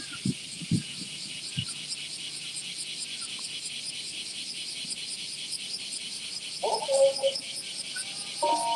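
A dense chorus of summer cicadas, a steady high-pitched pulsing buzz. A few low thumps come in the first second and a half, and a short pitched call sounds about seven seconds in.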